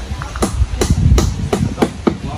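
A steady series of sharp knocks, about three a second, beginning about half a second in, over a low background rumble.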